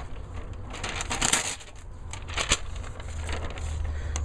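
A sheet of lined notebook paper rustling and crinkling as it is picked up and handled, densest about a second in, with a sharp crackle about two and a half seconds in.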